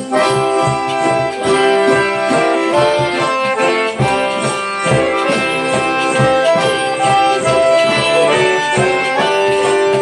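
Live acoustic band music: a piano accordion carrying the melody in held notes over a banjo, with a steady beat.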